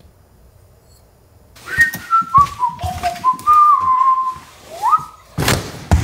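A person whistling a short tune of held notes and small pitch steps, starting after about a second and a half of quiet and ending on a rising glide. Soft footsteps run underneath, and a short loud noise comes near the end.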